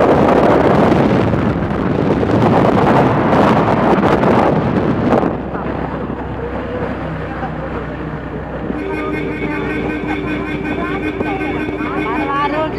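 Wind rushing over the microphone of a moving vehicle, with a low rumble under it, dropping off about five seconds in. From about nine seconds on, steady pitched tones with a wavering line above them come in over the quieter rumble.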